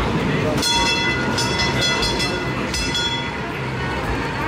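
Warning bell of a red heritage tram ringing in a rapid series of clangs, starting about half a second in and lasting about two and a half seconds, over the chatter of a pedestrian crowd.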